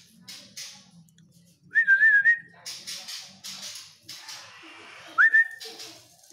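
Two drawn-out whistled notes, the second sliding up into a held tone, with short hissing bursts between them.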